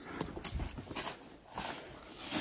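Footsteps going down a rocky slope: shoes knocking and scuffing on stones and dry leaf litter at an uneven pace.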